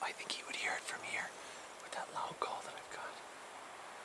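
A person whispering in short phrases for about three seconds.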